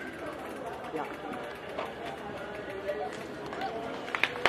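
Low murmur of spectators talking, with scattered faint voices and no single sound standing out.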